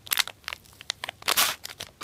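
Thin plastic candy-kit tray crackling and clicking as it is gripped and moved by hand: a run of sharp crackles with a longer rustle about halfway through.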